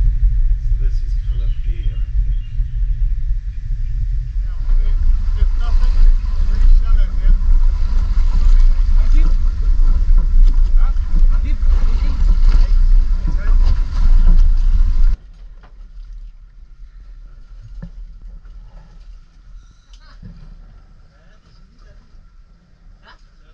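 Heavy low rumble of wind and boat noise on the microphone at sea, cutting off suddenly about two-thirds of the way through. After that, only quieter, fainter boat sounds.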